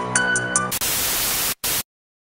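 Background music with a steady ticking beat, cut off about three quarters of a second in by a loud burst of TV static hiss; the static drops out briefly, returns for a moment, then cuts off suddenly.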